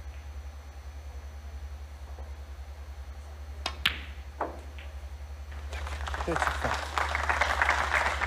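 Snooker balls: two sharp clicks about a quarter second apart as the cue strikes the cue ball and the cue ball hits a red, then a softer knock half a second later. About two seconds after, audience applause starts and builds, over a steady low hum.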